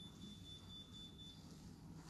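Near silence: room tone, with a faint thin high-pitched tone that lasts about a second and a half and then stops.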